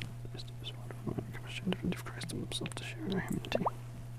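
A man's voice murmuring quietly, too low for the transcript to catch: the priest's private prayer said while water is poured into the wine in the chalice. A steady low hum runs underneath.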